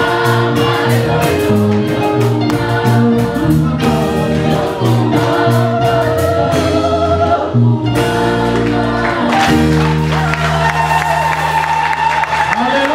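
Small women's gospel choir singing into microphones, with amplified voices over a live church band's held chords and a steady drum beat. The drums stop a little past halfway and long sustained chords ring on under the voices.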